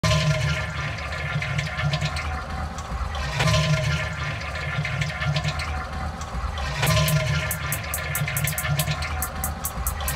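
A toilet flush sampled and looped as the opening of a hip-hop type beat, repeating about every three and a half seconds over steady tones and a low bass layer. Rapid, fast high ticks come in about seven seconds in.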